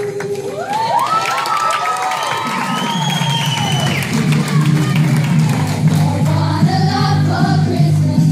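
A girl's held sung note ends and the audience cheers and whoops over it. The school band comes in with sustained low notes and a steady beat, and the choir starts singing near the end.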